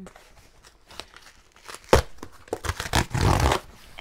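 A shipping package being torn open by hand: light handling, one sharp knock about halfway, then about a second of loud tearing and crinkling of the packaging near the end.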